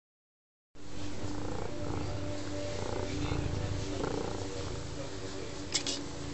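Domestic cat purring, a steady low rumble that starts just under a second in.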